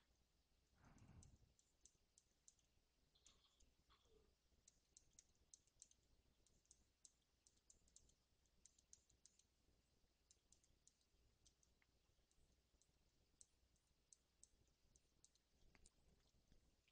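Near silence with faint, irregular clicks from a computer pointing device being worked while painting digitally, and a brief soft sound about a second in.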